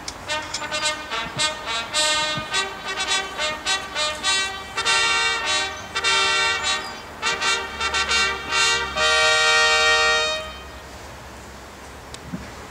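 Military brass band playing a slow piece, ending on a long held chord about ten seconds in.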